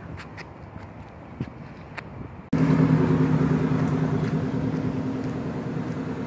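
Light outdoor background with a few faint clicks, then, after a cut about two and a half seconds in, an old 4x4's engine running loud and steady, slowly fading as it pulls away.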